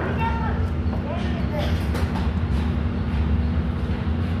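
Indistinct voices talking over a steady low rumble and hum.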